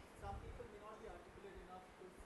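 Faint, distant male voice speaking: a student asking a question from the audience, heard only faintly on the lecturer's lapel microphone.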